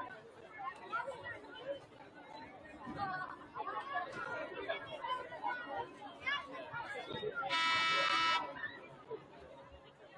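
A stadium scoreboard horn sounds one steady blast of just under a second, over the chatter of players and spectators. It marks the pregame countdown clock reaching zero.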